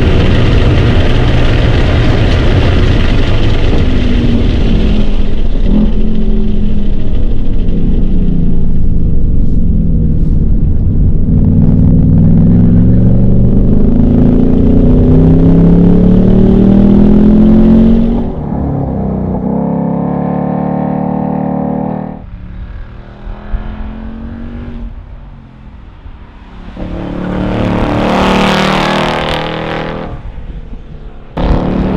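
2024 Ford Mustang Dark Horse's 5.0-litre Coyote V8 pulling at wide-open throttle at over 120 mph, heard from inside the car, its pitch climbing. About 18 seconds in the sound drops to a lower, steadier engine note, and near the end the car passes by, rising and then falling away.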